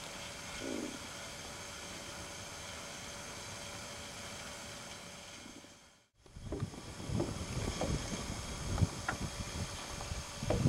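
Small boat under way across a lake: a steady hum of motor and water, broken by a sudden dropout about six seconds in. After it, gusts of wind buffet the microphone.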